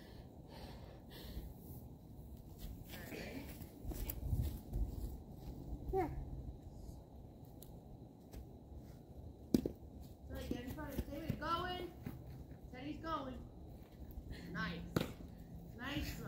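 A baseball smacking once, sharply, into a catcher's mitt about halfway through, with a second, smaller smack near the end. Faint talk is heard between the throws.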